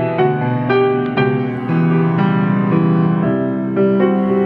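Yamaha C3 6'1" grand piano being played: chords and a melody struck in quick succession, with notes ringing on and overlapping.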